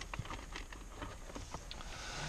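Faint dogs barking in the distance, a few short barks, over a low steady hum.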